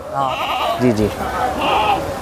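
A goat bleating, its call wavering for about a second.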